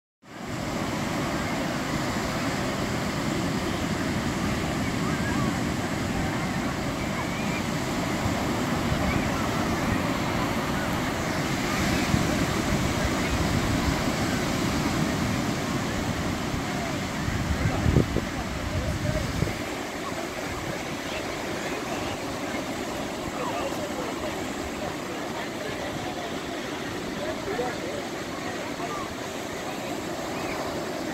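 Ocean surf washing steadily onto the beach, mixed with distant voices of people in the water. A low rumble stops suddenly about twenty seconds in, and there is a single knock just before that.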